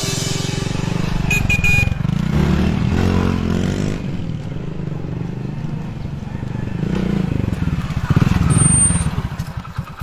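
Motorcycle engine running as the bike rides along, rising and falling in pitch a few times with the throttle, then easing off near the end as it slows to a stop.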